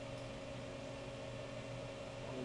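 Steady workshop background noise: a low, even hum with a faint hiss, like a ventilation or equipment fan running.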